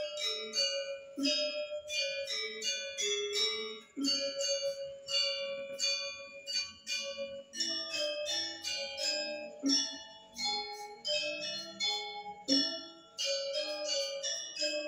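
Balinese gamelan music: bronze bell-like metallophone keys struck in a quick, busy repeating pattern over a steady held tone, with a low gong-like stroke every couple of seconds.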